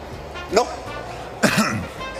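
A man coughs once, sharply, about one and a half seconds in, right after a brief spoken "no, no".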